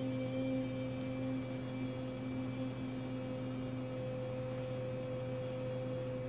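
A woman's voice holding one long, steady sung note, a healing tone, unchanging in pitch throughout. A low electrical hum runs beneath it.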